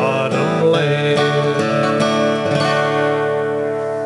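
Acoustic guitar strummed through the closing bars of a country song, ending on a final chord that rings out and slowly fades.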